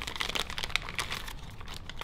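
Crinkling and rustling of an STS casting sock's packaging pouch as gloved hands tear it open and pull the wrapped sock out, a quick run of dry crackles.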